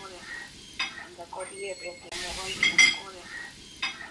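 Small fish sizzling as they fry in an oily masala gravy in a metal pot, with a few sharp clicks.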